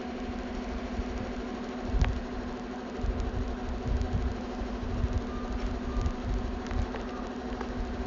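A steady, low, machine-like hum with an uneven rumble underneath, and a single sharp click about two seconds in.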